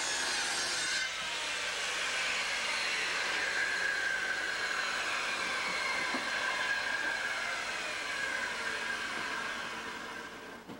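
A corded circular saw cutting plywood, its high cutting noise ending about a second in. A steady electric motor noise with a whine carries on, the whine sinking slowly in pitch and the sound fading near the end.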